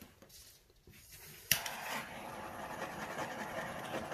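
A small handheld butane torch lights with a sudden click about a second and a half in, then burns with a steady hiss as its flame is passed over wet epoxy resin coasters.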